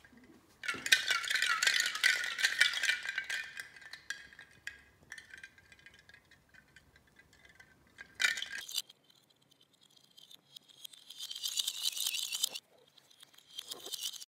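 Plastic light-up ice cubes rattling and clinking against the inside of a large glass jar of water as the jar is shaken. It comes in bursts: a long run of about four seconds near the start, a short shake about eight seconds in, and another run of about two seconds near the end.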